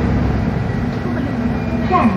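Steady low rumble of a bus in motion, heard from inside the cabin, with faint voices in the background.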